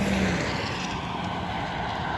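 Steady rumble of motor traffic on the nearby road, an even wash of engine and tyre noise with no single loud event.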